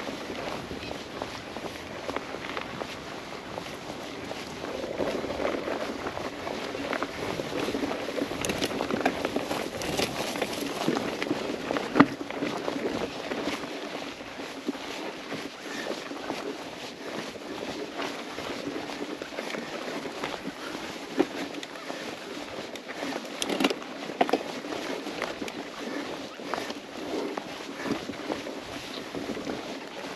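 Mountain bike rolling along a dirt singletrack: a steady rush of tyres on dirt with scattered rattles and knocks from the bike over small bumps, the sharpest knock about twelve seconds in.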